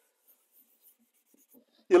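Faint, sparse scratches of a pencil on drawing paper, barely above silence, with a man's voice starting just before the end.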